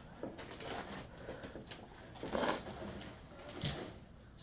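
Faint handling noises: small items being picked up and moved about on a tabletop, with a few brief soft rustles, the loudest about halfway through.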